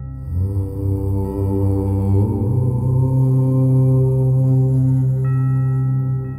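A long chanted "Om" in a low voice, held as one note whose vowel and pitch shift about two seconds in, over a steady low drone. Struck bell tones come back in near the end.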